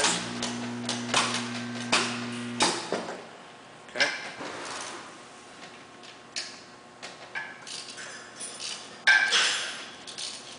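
Electric motor stator energized on AC, humming steadily with light metallic clinks over it, then cutting off suddenly after about two and a half seconds when it is de-energized. Scattered clinks and handling knocks follow, the loudest near the end.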